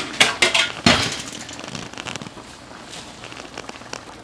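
Adobo braising liquid of vinegar and soy sauce boiling hard in a wok, a steady bubbling crackle. A few sharp clicks sound in the first second.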